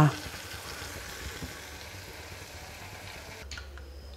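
Faint, steady hiss of oil heating in an iron kadai over a gas burner. It stops abruptly about three and a half seconds in, leaving a low hum.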